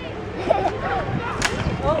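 Scattered voices chattering, with one sharp slap about one and a half seconds in.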